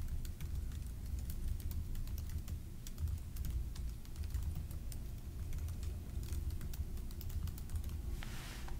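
Typing on a computer keyboard: quick, irregular keystroke clicks throughout, over a low steady hum.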